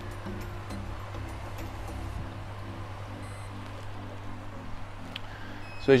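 Aquarium sump return pump being switched off: a faint whine falls in pitch over the first two seconds as the pump winds down, over a steady low hum. Quiet background music with short stepped notes runs underneath.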